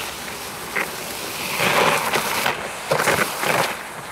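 A plastic sled scraping and hissing as it slides across ice, the rough noise swelling in uneven surges.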